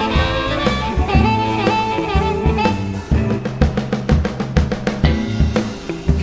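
Electric blues band playing an instrumental break: a lead line with bent notes over bass and drums. About halfway through, a quick run of snare drum hits makes a fill that leads back into the verse.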